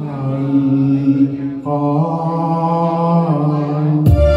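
A male singer holding long, sustained notes over light keyboard accompaniment. The pitch steps up about one and a half seconds in and drops back down near the end.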